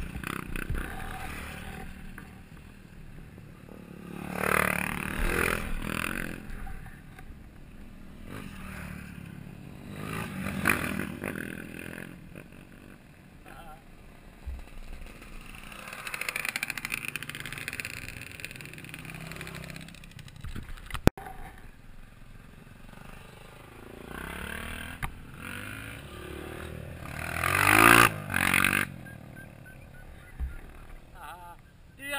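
Off-road dirt bikes riding past on a gravel road, several passes, each with an engine pitch that rises and then falls, the loudest and closest one near the end. A sharp click about two-thirds of the way through.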